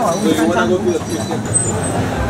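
Indistinct voices of people talking over a steady background of street and traffic noise.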